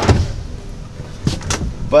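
Wooden cabinet door under a camper-van galley sink being handled and pulled open: a knock at the start, then two sharp clicks about a second and a half in.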